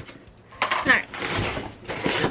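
Packing paper rustling and crinkling as a mail-order package is unpacked, in uneven noisy bursts that begin about half a second in.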